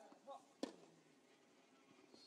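A single sharp crack of a tennis racquet striking the ball about half a second in, just after a short grunt, with quiet court sound otherwise.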